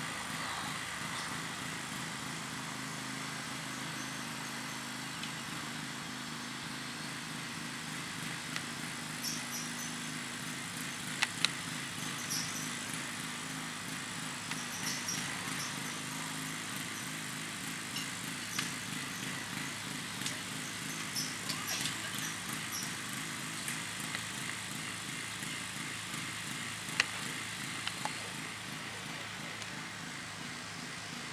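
Steady drone of a distant engine, with short high chirps scattered over it and a few sharp clicks.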